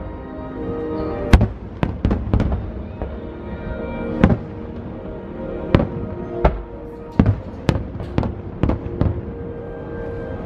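Aerial fireworks shells bursting in a quick, irregular series of about a dozen sharp bangs, the loudest a little over a second in, with music playing underneath.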